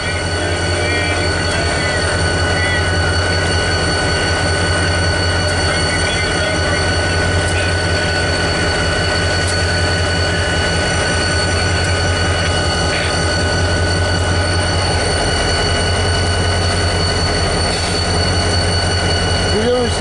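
CSX freight train's diesel locomotives running close by: a loud, steady low drone with constant high whining tones over it.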